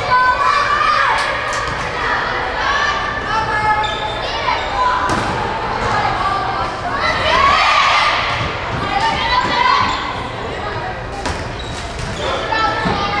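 Voices of players and spectators calling and shouting during a volleyball rally, echoing in a gymnasium, with several sharp smacks of the ball being hit. The shouting is loudest about seven to eight seconds in.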